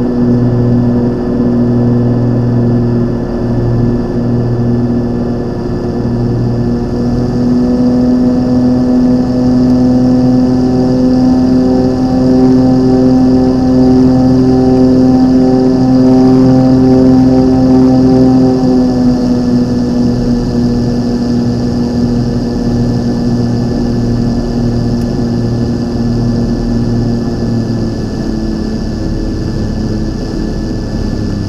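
Single-engine light aircraft's engine and propeller running steadily, heard inside the cabin on final approach. The engine note rises slightly about a quarter of the way through, then steps down about two-thirds of the way through and drops a little again near the end.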